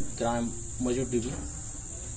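Crickets chirring in a steady, unbroken high drone, with a man's voice making two short sounds in the first second or so.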